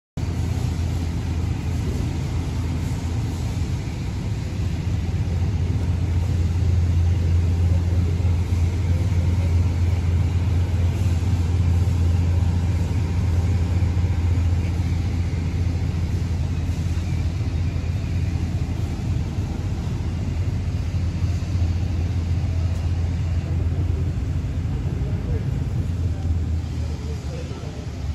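Steady low mechanical drone, growing louder a few seconds in and easing off near the end, with faint voices in the background.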